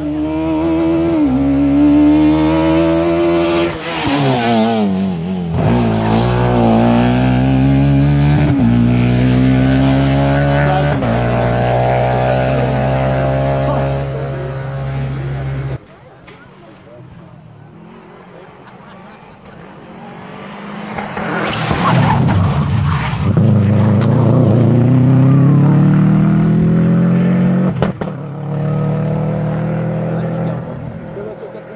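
Rally car engine at full throttle on a special stage, the pitch climbing and dropping back sharply at each gear change. About halfway through the sound cuts off abruptly. A few seconds later another rally car is heard accelerating, its pitch rising through the gears.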